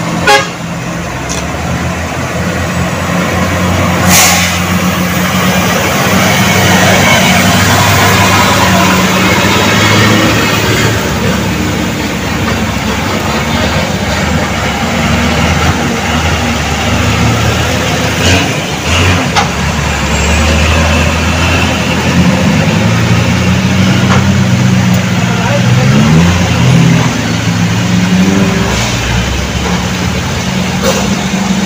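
Heavy trucks and other vehicles climbing a steep hairpin bend, their engines running under load, with engine pitch rising several times in the last third as vehicles pull away. Horn toots and voices are mixed in, and there are a couple of sharp knocks in the first few seconds.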